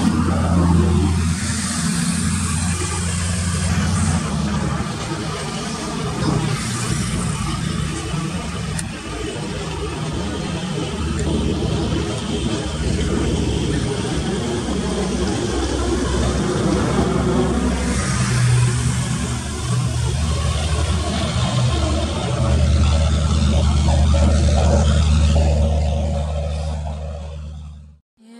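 A Rajdhani Express train rumbling steadily along the track as its coaches run away into the distance, with a continuous low hum that swells for a few seconds near the end. The sound fades out at the very end.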